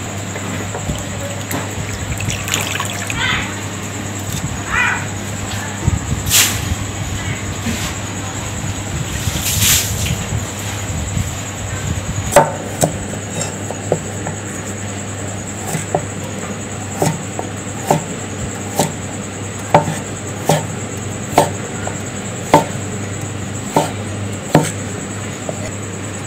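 Water sounds as squid are handled in a bowl of water in the first half. From about halfway on, a knife chops through a firm orange vegetable onto a cutting board, with a sharp knock roughly once a second, over a steady low hum.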